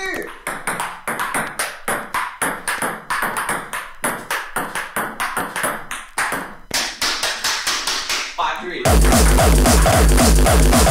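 Table-tennis ball being struck back and forth in a rally, heard as a quick, irregular series of sharp clicks, sampled into a hardcore techno track. Near the end a loud, distorted hardcore kick-drum beat drops in.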